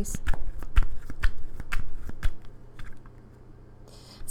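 Tarot cards being shuffled in the hands: a quick run of crisp card slaps and clicks that dies away a little past halfway.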